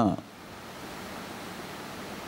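A spoken word trails off right at the start, then a steady, even background hiss of room noise with nothing else.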